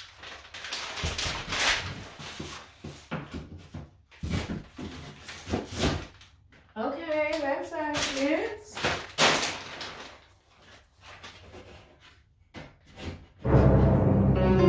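Irregular knocks, thumps and rustles of a wooden 1x4 furring-strip baseboard being handled and set against the foot of a wall to test its fit, with a short vocal sound in the middle. Music comes in near the end.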